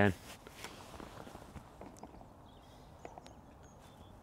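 Quiet outdoor background with a few faint, scattered clicks and taps.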